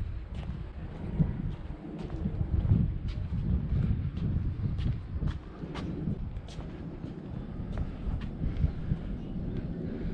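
Wind buffeting the microphone in an uneven low rumble, with scattered faint clicks and knocks.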